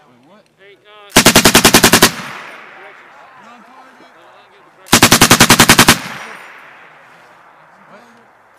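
7.62 mm M240B machine gun firing two bursts of about ten rounds each, each lasting about a second, roughly three seconds apart. Each burst dies away in a long echo.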